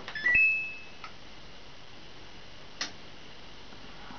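Samsung washing machine's control panel beeping as a button is pressed: a click, a quick rising pair of notes, then a higher tone held for about half a second. A single sharp click follows near three seconds in.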